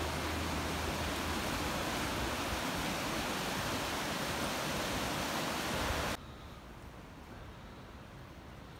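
River rapids rushing over rocks, a steady hiss of white water. It cuts off suddenly about six seconds in, leaving a much fainter background.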